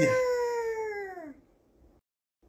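A person's voice acting out a long, drawn-out scream ('AAIIIEEEHHH!') that slides steadily down in pitch and dies away about a second and a half in.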